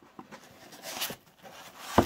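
Foam packing insert rubbing and scraping against a cardboard box as it is pulled out, building to a sharp knock at the end.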